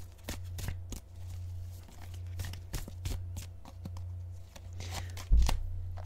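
Tarot cards being handled and shuffled: a scatter of light, irregular card clicks and snaps over a steady low hum, with a single heavier thump about five seconds in.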